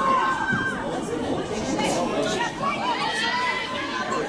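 Several voices shouting and calling out over one another during live play, high-pitched calls standing out from a general chatter, with no clear words.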